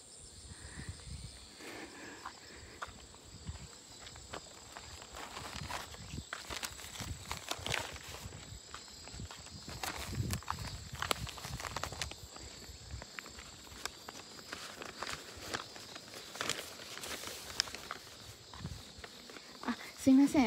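Quiet footsteps of a person walking outdoors, an irregular run of soft steps and knocks, over a faint steady high-pitched tone.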